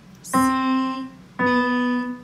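Digital piano with a grand piano sound playing two single notes about a second apart: a C, then the B just below it, each held and fading.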